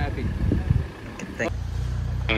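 A man's voice trailing off over a low irregular rumble; about one and a half seconds in, background music cuts in with a low steady bass note.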